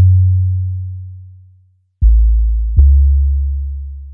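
GarageBand's Super Sub 808 sub bass playing alone: a deep note rings out and fades to silence about a second and a half in, then a lower note starts at two seconds and a higher one follows under a second later, each with a soft click at its start.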